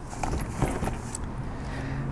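Faint handling noise from a folding solar panel being adjusted: light rustles and a couple of soft clicks over steady outdoor background noise.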